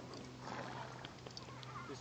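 A horse lying in arena dirt while trying to roll gives a breathy groan about half a second in.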